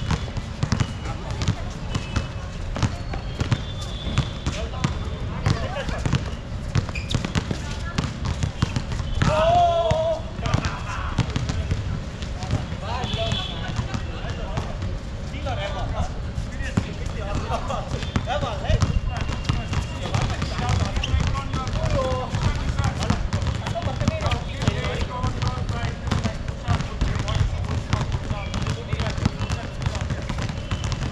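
A basketball bouncing on a hard court as it is dribbled and passed, with many short knocks, amid players' shouting voices.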